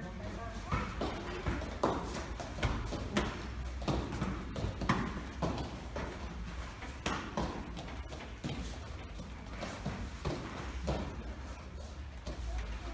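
Taekwondo sparring: irregular thuds and slaps, roughly one every half second to a second, from kicks landing on padded chest protectors and bare feet stamping and shuffling on foam mats.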